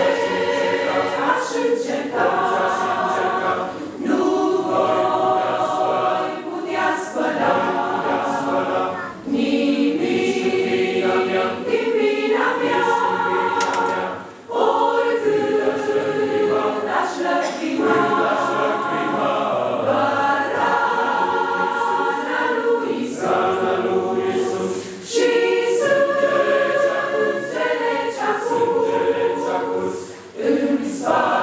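Church choir singing a hymn in Romanian, in long sustained phrases with short breaks between them.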